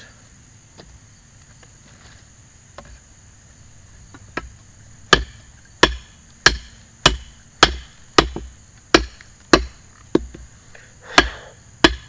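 Cold Steel Bushman fixed-blade knife chopping into a branch laid on a wooden stump: a quiet start, then from about four seconds in a run of about a dozen sharp chops, roughly one every 0.6 seconds. A steady high insect trill runs underneath.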